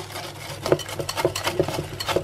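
Wire whisk beating a thick coconut flour bread batter in a glass bowl: quick repeated strokes, with the wires clicking against the glass several times a second.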